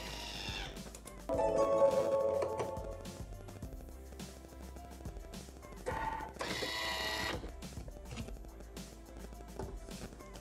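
Bimby (Thermomix) TM6 food processor running its mixing blade at speed 4, a steady motor whine that starts about a second in and fades out by about three seconds, over background music. A brief louder burst of sound follows around six to seven seconds in.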